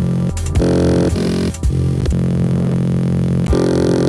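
Dubstep-style electronic music with a sustained synth chord over bass, run through a grain-stutter effect; the sound cuts off briefly about a third of a second in and again about a second and a half in, and changes shortly before the end.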